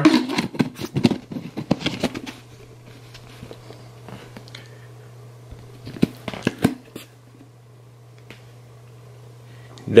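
Light clicks and knocks of plastic being handled: the scoop going back into the protein powder tub and the containers being moved and closed. The clicks come in a dense cluster over the first two seconds and again about six seconds in, over a steady low hum.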